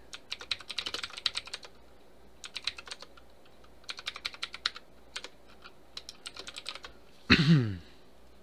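Computer keyboard typing in four short bursts of keystrokes with pauses between. Near the end, a brief, louder vocal sound that falls in pitch.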